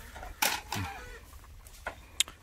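A short, loud animal call about half a second in, its pitch dropping steeply, followed by a few sharp clicks near the end.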